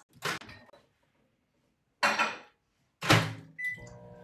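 A microwave oven being loaded and started: three separate knocks and clunks from its door and a glass measuring cup going in, a short high electronic beep near the end, then the oven starting to hum.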